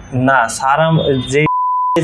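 A man speaking, cut off near the end by a steady high beep of about half a second, with all other sound muted: an edited-in censor bleep over his words.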